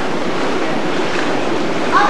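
Water splashing and sloshing steadily as children swim and move about in an indoor pool.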